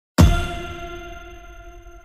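A single metallic clang, struck once just after the start with a deep thud underneath, then ringing on with a bell-like tone and slowly fading away.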